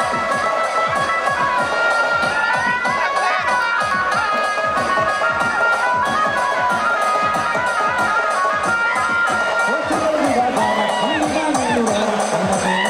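Festival band music: a rapid teenmar drumbeat with a wind instrument holding long melody notes over it, and a crowd cheering.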